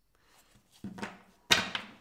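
Tarot cards being handled on a table: a soft knock a little under a second in, then a sharp, loud slap or knock about halfway through that fades quickly.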